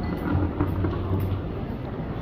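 Steady background noise of a busy airport terminal: a low rumble, slightly louder in the first second, with no single distinct event.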